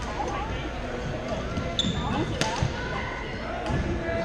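Badminton play in a large gymnasium: a sharp racket strike on the shuttlecock about halfway through and a short high squeak just before it, likely a court shoe on the wooden floor. Under it runs a steady murmur of players' voices from the other courts, echoing in the hall.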